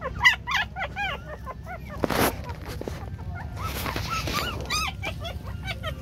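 Newborn puppies whimpering and squealing in rapid short, rising-and-falling cries as they are handled. A brief rustling burst about two seconds in and another around four seconds.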